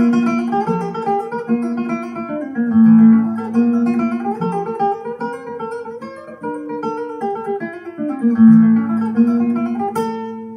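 Flamenco guitar playing from a vinyl record through a large horn loudspeaker system, heard in the room. Runs of plucked notes are broken by loud strummed chords at the start, about three seconds in and near the end.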